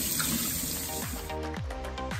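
Tap water running onto a block of beeswax in a stainless steel sink, cutting off about a second and a half in as electronic dance music with a beat and falling bass sweeps takes over.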